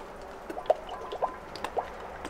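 Used engine oil pouring in a thin stream from the spout of a plastic oil-extractor tank into a metal funnel, trickling steadily, with several short rising plinks as it drips and splashes into the funnel.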